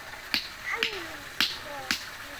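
Small hand hammer striking brick, breaking bricks into chips by hand: four sharp knocks about half a second apart.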